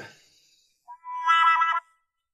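A short synthesized musical sting, a little under a second long, coming in about a second in: a bright cluster of high electronic notes that stops abruptly.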